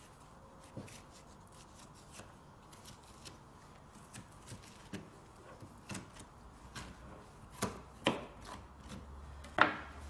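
Butcher's knife cutting and scraping along the bones of a beef fore rib as the ribs and backbone are freed from the meat, with scattered light clicks. A few sharper knocks come in the second half, the loudest about a second and a half before the end.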